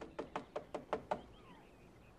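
Knocking on a door: six quick raps, about five a second, over roughly one second.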